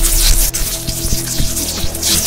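A loud, static-like hiss of a magic spell sound effect over a soundtrack with a steady low drone.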